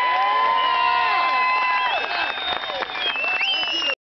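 Crowd applauding and cheering: clapping under long held whoops and yells, one drawn out for about two seconds at the start, others rising and falling near the end.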